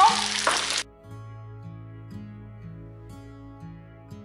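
Spaghetti sizzling in a hot frying pan as it is stirred, cutting off suddenly under a second in; after that, soft background music with held notes.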